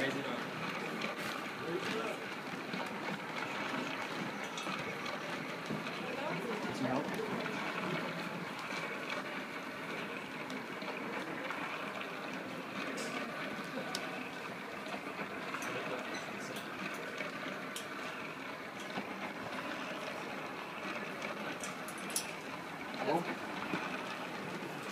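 Steady, indistinct chatter of a group of people talking in a room, with no single voice standing out.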